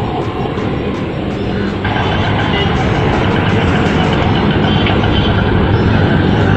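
Motor vehicle engine sound running steadily, a low hum under dense noise, changing abruptly about two seconds in.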